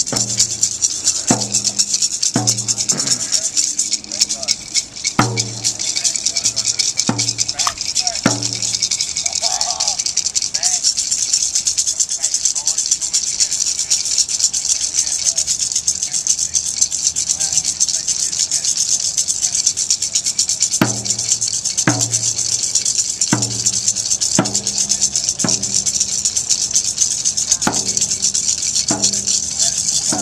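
Music of a drum struck in a slow, uneven beat, about one stroke a second, over a continuous high shaker rattle; the drum falls silent for about ten seconds in the middle and then resumes.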